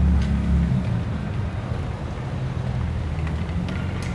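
Low, steady rumble of outdoor street background noise, heaviest in the first second while the phone is being moved.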